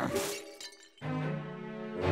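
A short bright crash right at the start, dying away within about half a second, then a brief near-silent gap; about a second in, low sustained orchestral cartoon music comes in.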